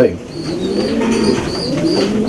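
Racing pigeons cooing in the loft, several low coos overlapping and wavering in pitch.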